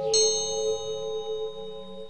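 Meditation music: a high bell or chime struck once just after the start, its bright ringing tones fading slowly over the dying sustained tones and low drone of the meditation piece.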